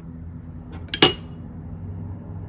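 A single light clink of something touching a porcelain dish about a second in, ringing briefly, with a couple of faint ticks just before it. A low steady hum runs underneath.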